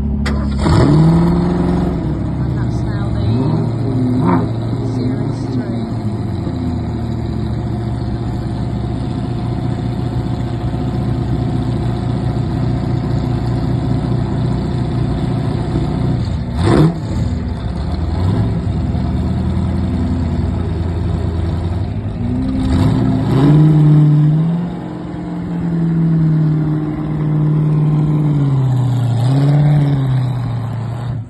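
Ford GT40 and 2017 Ford GT engines idling, with a few sharp throttle blips. Near the end the engines hold higher, wavering revs as the cars pull away.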